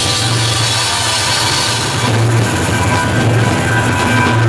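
Live rock band playing with bass, keyboards and drums; the bright top of the sound thins out about halfway through.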